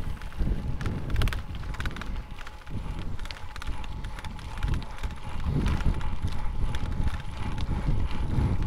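Wind noise on the microphone and a bicycle rattling over a rough dirt path at close to 20 mph, with many small clicks and knocks from the bike.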